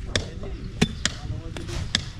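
A steel digging bar and a hoe striking hard, stony soil and roots around a mulberry stump being dug out: a few sharp thuds with a gritty crunch, the loudest a little under halfway through.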